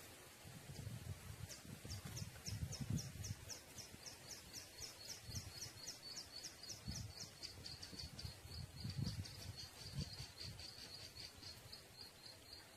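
A small animal calling with a steady train of short, high chirps, about four a second, over low, irregular rumbling.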